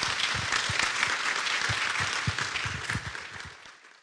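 A small audience applauding, steady at first and dying away near the end.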